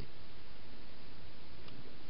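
Steady hiss from a trail camera's microphone, with a faint tick about a second and a half in.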